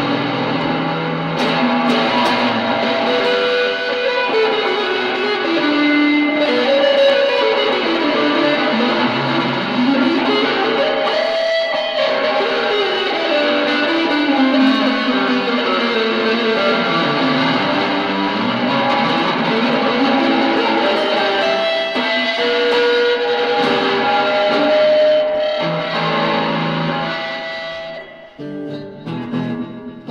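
Old Kay electric guitar, probably from the 1960s, being played: runs of single notes climbing and falling in pitch among chords. The playing dies away about two seconds before the end.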